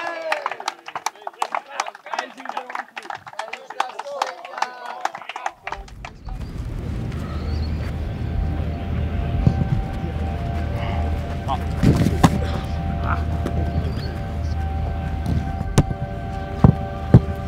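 A man's voice addressing a group for about the first five seconds, then background music with a steady low bass and held tones. A few sharp thuds sound over the music in the second half, one just before the end.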